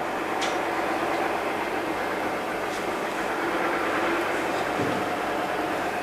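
Steady background noise with a faint even hum and no speech: lecture-room background noise.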